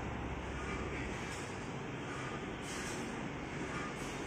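Steady background rumble and hiss, even throughout, with no distinct knocks or clinks.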